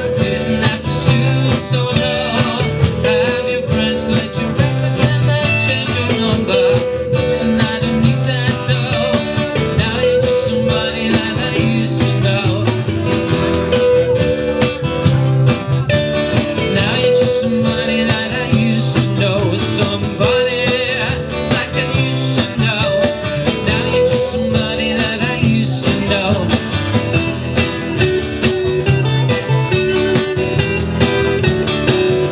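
Live acoustic band playing an instrumental passage: strummed acoustic guitar, hollow-body electric guitar, upright double bass and cajon, with a short melodic figure recurring every few seconds.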